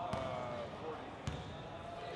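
Basketball dribbled on a hardwood gym floor: two bounces about a second apart.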